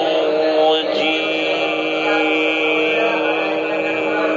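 A man's voice reciting the Quran in the melodic tajweed style, holding one long, steady note: a drawn-out vowel of the recitation, with a brief break about a second in.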